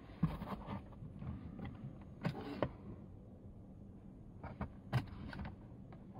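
Handling noises inside a car cabin: a few soft clicks and knocks, each with a short rustle, as a hand works the interior fittings near the sun visor. They come about a quarter second in, around two and a half seconds in, and again around five seconds in.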